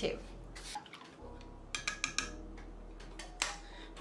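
A few light clinks and knocks of kitchenware being handled on a table: a metal bread-machine pan and glass measuring cups. There is one knock about a second in, a quick cluster around two seconds, and another near the end.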